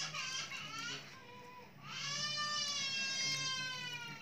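A cat meowing: a short call at the start, then one long, drawn-out meow from about two seconds in.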